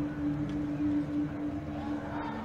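A steady low machine hum holding one pitch, over faint background noise.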